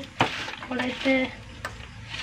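A utensil knocking sharply against a pot or dish just after the start, then stirring and scraping in it, with a second light click near the end.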